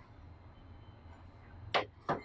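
A small loudspeaker's stamped-metal frame set down on a plastic TV cabinet floor: one sharp knock near the end.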